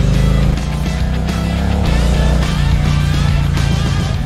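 Honda CB1000R's 998 cc inline-four engine running, its rumble heard together with background music.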